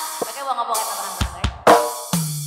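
A drum kit playing a short fill of several separate hits with cymbal, the loudest stroke near the end, leading into a qasidah song.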